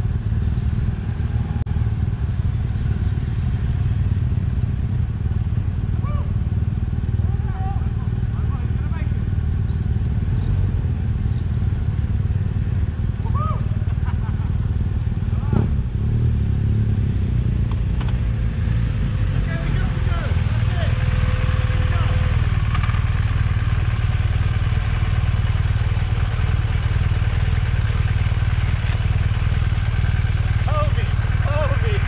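Several motorcycles riding at low speed, their engines giving a steady low rumble. From about 20 seconds in, one machine comes close and the sound grows louder.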